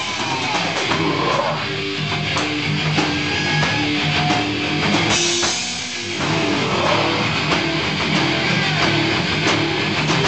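A live rock band playing, with guitars and a drum kit; the low end thins out briefly a little before the six-second mark and then comes back.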